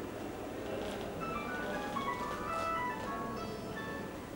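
An electronic melody of short, pure beeping notes at changing pitches, like a mobile phone ringtone, playing over room noise and stopping near the end.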